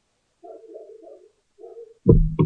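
A bird's low cooing call: a quick run of short notes, then one more note just before the end.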